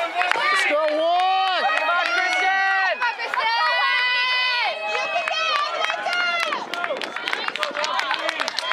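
Spectators yelling to cheer runners on. Several high voices hold long, drawn-out shouts through the first five seconds, then break into shorter, choppier cheering with some clapping.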